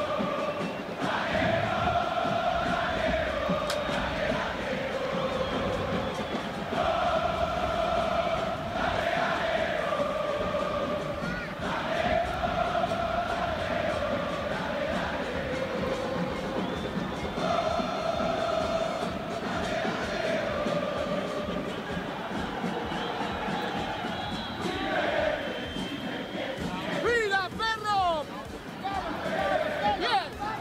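Football stadium crowd, the Boca Juniors away end, singing a chant in unison, the sung phrase returning every few seconds. A flurry of short sliding tones rises over it near the end.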